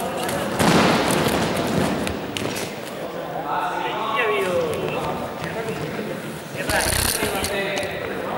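Heavy foam gym mats thudding and slapping onto the wooden floor of an echoing sports hall, twice: about half a second in and again near the end, amid voices.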